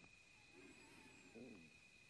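Near silence: a steady faint high tone, with two faint, brief pitched sounds, one about half a second in and one about a second and a half in.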